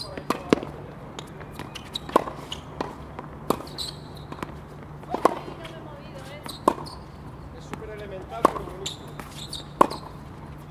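Tennis balls being struck by rackets in a baseline rally on a hard court. Sharp, crisp hits and ball bounces come every second or so, louder and softer in turn.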